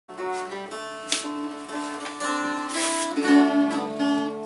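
An octave mandolin played with a flatpick and a mountain dulcimer on the lap, playing a tune together, with several sharp picked strums among ringing notes.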